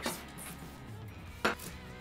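A single sharp knock of a kitchen knife about one and a half seconds in, during the chopping and scraping of minced garlic and celery, over quiet background music.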